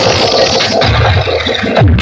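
Loud electronic remix music from towering stacks of sound-system speakers, with heavy bass and a harsh, noisy scratch-like effect over it that eases near the end.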